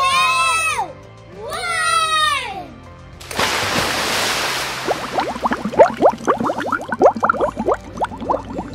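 Two high, drawn-out shouts from a child, each rising and falling. About three seconds in comes a sudden splash into a swimming pool, then dense underwater bubbling, a quick run of short rising chirps heard through water.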